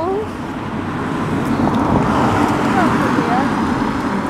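A car passing close by, its tyre and engine noise swelling to a peak about halfway through and easing off as it moves away.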